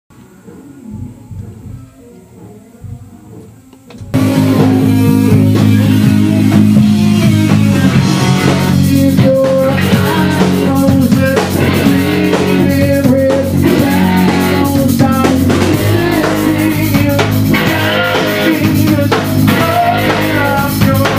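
Rock band playing in a rehearsal room: drum kit, electric guitar and bass guitar come in loud and all at once about four seconds in.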